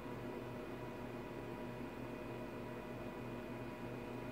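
Faint steady background hiss with a few steady low hum tones running underneath: electronic bench room tone, with no distinct events.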